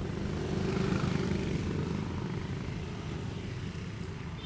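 A low, steady rumble like a passing engine, swelling about a second in and then slowly fading.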